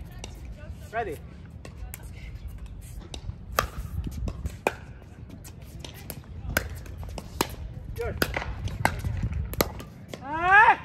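Pickleball rally: paddles striking the hollow plastic ball, sharp pops at uneven gaps of about a second, thickening toward the end. Brief voice calls come in about a second in and again near the end, over a steady low rumble.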